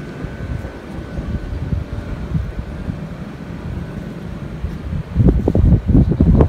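Wind buffeting the microphone: an uneven low rumble that gusts much louder about five seconds in.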